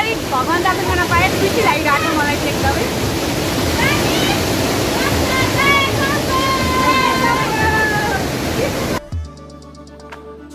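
Rushing water of a stream cascading over rocks, with people's voices calling out over it. About nine seconds in the water sound cuts off suddenly and gives way to background music with a beat.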